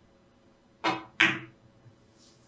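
A carom billiards shot: the cue tip clicks against the cue ball, then about a third of a second later a louder clack as the cue ball strikes the object ball, followed by a faint knock.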